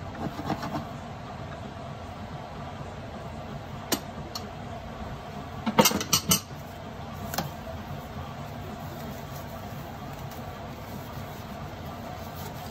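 Steady low kitchen background hum, broken by a single sharp click about 4 s in and a short cluster of clicks and clatters around the middle, as a wire whisk and a mixing bowl are handled and set down.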